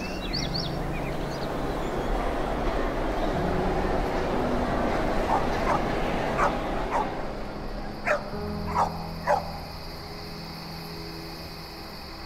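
A dog yelping: a run of about eight short, pitched yelps in the middle, the last three loudest. Underneath them run a steady rush of noise and low held musical notes, and a thin high steady tone comes in about halfway.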